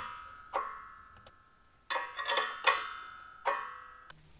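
Wrench clinking against the steel grinder stand and mounting plate while the nylock nuts on the grinder's mounting bolts are tightened: several sharp metal knocks, each leaving the same ringing tone that dies away slowly.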